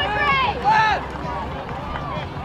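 People shouting in high, strained voices through the first second, then dropping back to a low background of voices.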